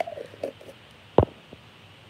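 A few light clicks, then one sharp knock just past halfway, over a low steady room hum.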